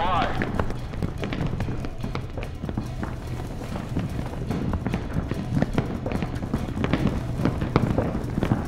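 Film soundtrack: a low, steady droning music score with many quick taps and knocks over it, like footsteps and gear moving. A brief warbling tone sounds right at the start.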